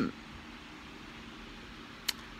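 A pause in talk filled by a faint, steady hiss of room noise, with the tail of a woman's word just at the start.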